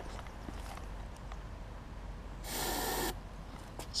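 A short hiss of aerosol starting fluid sprayed into the open air intake of a Briggs & Stratton 3.5 hp push-mower engine, lasting about half a second, a little past halfway through.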